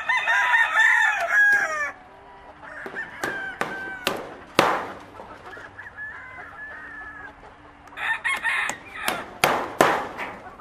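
Rooster crowing: one long crow in the first two seconds and a shorter one about eight seconds in, with fainter calls between. Several sharp knocks come in between, a few seconds in and again near the end.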